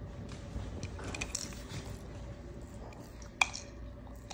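A baby mouthing and handling a plastic teether toy with rattle pieces: faint wet chewing and small plastic clicks, with one sharper click about three and a half seconds in.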